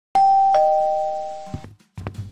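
Two-note ding-dong doorbell chime: a higher note, then a lower one less than half a second later, both ringing on and fading away over about a second and a half.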